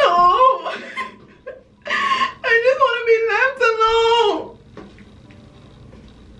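A woman's loud, high-pitched fake crying: a short wail at the start, a breathy gasp about two seconds in, then a long wavering wail that trails off about four and a half seconds in.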